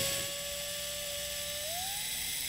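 Cordless drill-driver driving a self-tapping screw through a metal bracket: a steady motor whine that rises in pitch near the end.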